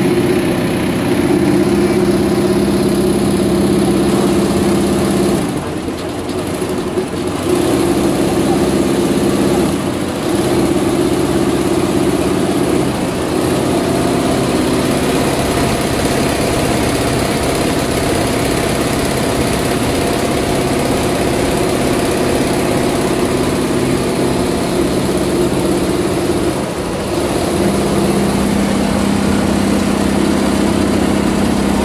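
Richpeace mixed chenille embroidery machine running and stitching: a steady mechanical whir and hum, dipping briefly about six seconds in and again near the end.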